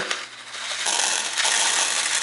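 Small sprouting seeds poured from a packet, pattering onto a plastic sprouting tray as a dense rush of tiny ticks that starts about a second in.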